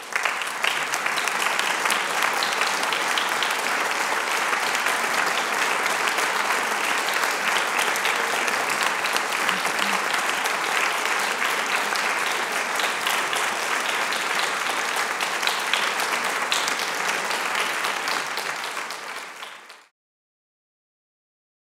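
Seated audience applauding steadily after a speech, the clapping fading out in the last second.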